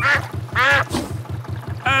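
Cartoon duck quacking, two calls in the first second. Underneath, the low, even putt-putt of a canal boat's engine.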